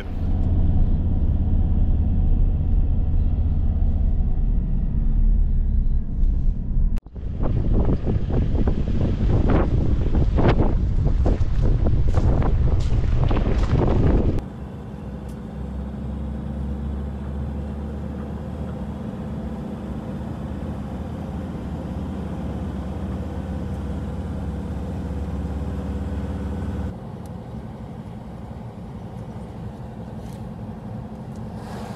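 A ute being driven, heard from inside the cab: a steady low engine and road rumble. It is loud and rough through the first half, with a brief cut-out about seven seconds in. About halfway it drops to a quieter, even drone.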